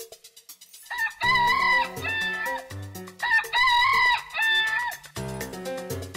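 Rooster crowing twice, each crow about a second and a half long, with light background music before and after.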